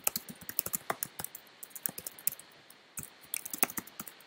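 Typing on a computer keyboard: quick runs of key clicks, with a short pause a little past halfway.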